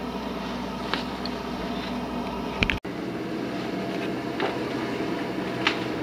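Truck-mounted leaf vacuum unit running steadily, a continuous engine-and-fan drone heard muffled through a house window, with a few faint clicks and a momentary dropout just before the middle.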